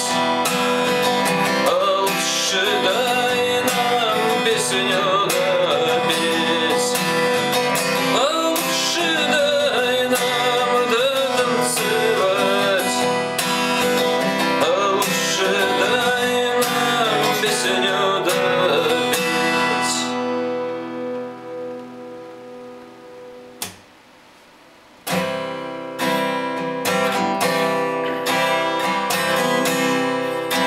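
Acoustic guitar strummed in chords, with a man singing along. About two-thirds of the way through, the strumming stops and the last chord rings away. After a single click and a brief pause, the strumming starts again without the voice.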